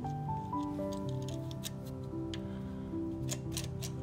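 Background music of soft held notes moving step by step in pitch, with a scatter of light clicks from plastic printer parts being handled.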